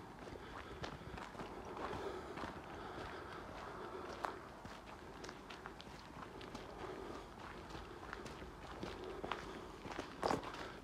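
Footsteps of people walking along an overgrown track, heard as a steady run of light, irregular steps and small clicks.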